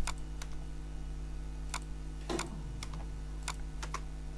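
A handful of separate computer keyboard keystrokes, irregularly spaced, as spaces are deleted from a typed tag. A steady low electrical hum runs underneath.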